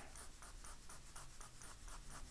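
Graphite pencil shading on drawing paper: faint, quick, even back-and-forth strokes, about five or six a second, darkening a shaded area of the drawing.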